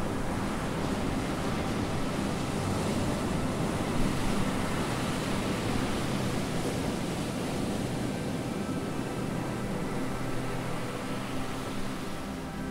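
Atlantic surf breaking on a sandy beach: a steady, continuous rushing wash of waves.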